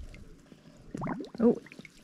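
Water pouring and dripping from a mesh crab pot as it is hauled up out of the water, with faint drips in the first second. A voice exclaims "oh" partway through.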